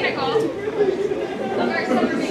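A crowd of teenagers chattering, with many voices overlapping.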